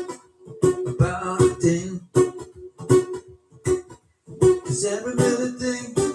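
Acoustic-electric guitar strummed live in short, choppy rhythmic bursts with brief gaps between them.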